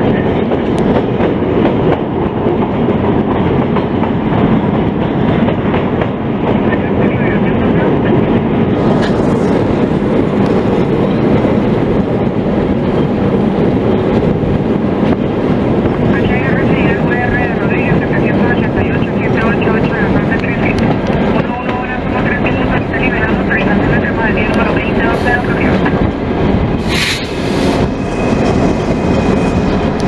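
CHEPE passenger train heard from on board, its wheels running on the rails with a steady, loud rumble while it crosses a steel bridge. A faint wavering high squeal comes in about halfway through, and a brief sharper high-pitched sound near the end.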